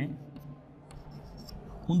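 Chalk scratching faintly on a chalkboard in a few short strokes as a line is drawn on a graph.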